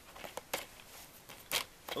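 A few light clicks and taps from plastic DVD cases being handled and laid out on carpet.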